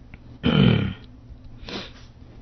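A man's short, low vocal sound about half a second in, falling in pitch and without words, then a fainter short vocal sound near the end.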